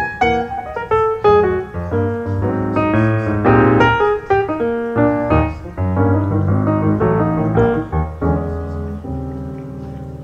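Background piano music: a busy passage of many quick notes that eases into longer held chords near the end, growing slightly softer.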